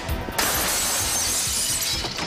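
A glass window pane smashed with a fire extinguisher: a sudden crash about half a second in, then glass shattering and falling for about a second and a half. Background music plays underneath.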